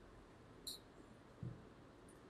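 Near silence: room tone, with a faint brief high squeak about a third of the way in and a soft low knock near the end.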